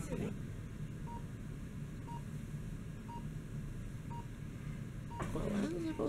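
Bedside patient monitor beeping a short high tone about once a second, keeping time with the pulse, over a steady low hum.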